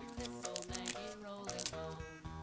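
Crinkling and crackling of a small clear plastic toy bag as a plastic toy is pulled out of it, over bouncy background music with a steady bass beat.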